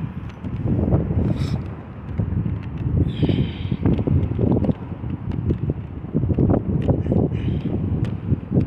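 Wind buffeting a phone's microphone: a loud, uneven low rumble that swells and drops, with scattered small knocks as the phone is carried along.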